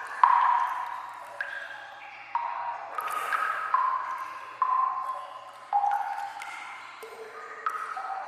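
Water drops dripping in a sewer, each landing as a sudden pitched plink that rings and fades, more than one a second at changing pitches.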